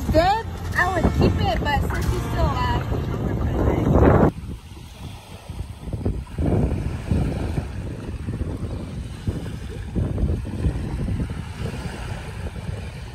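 Music with a sung or melodic line for about the first four seconds, cutting off suddenly. After it come wind buffeting the microphone and the wash of surf.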